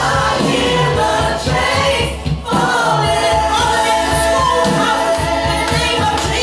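Women's voices singing a gospel worship song together through microphones, over instrumental accompaniment, with a brief drop in loudness about two seconds in.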